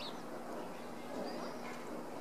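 Outdoor arena ambience: distant voices murmuring under a steady faint hum, with a few short, high bird chirps.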